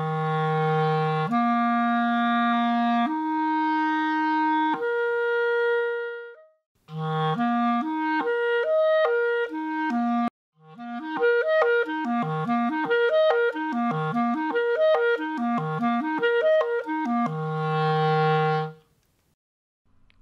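A clarinet played solo in an interval exercise that crosses the break between the low and middle registers, with the air kept flowing through the change of register. It opens with long held notes leaping upward, then two phrases of quicker moving notes after short breaths, and ends on a held low note.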